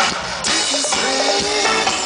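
A live band playing loud amplified music through a PA, heard from within the crowd, with electric guitar and drums in the mix.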